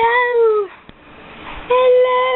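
Two drawn-out, high-pitched vocal calls, each about a second long and fairly level in pitch: one at the start and one near the end.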